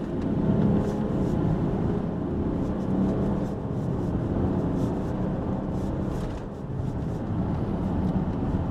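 Range Rover Sport engine and road noise heard inside the cabin as the SUV accelerates in sport mode, the engine note climbing, with a brief drop in level about six and a half seconds in.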